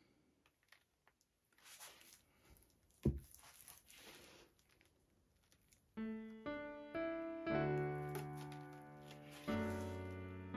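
Faint rustling and handling noise with a single thump about three seconds in, then background piano music starting about six seconds in: single notes stepping upward, joined by lower chords.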